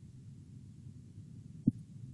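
Faint low hum of room and microphone noise over a video-call connection, with one short soft sound near the end.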